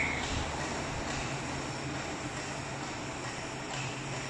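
Steady workshop background hum and hiss, unchanging throughout, with no distinct event.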